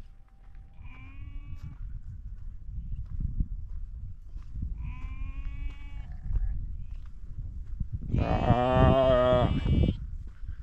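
A lost young animal bleating for its mother: three wavering bleats, the last one longest and loudest near the end.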